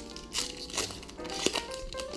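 Foil wrapper of a Pokémon trading card booster pack crinkling in the hands in short irregular rustles, over steady background music.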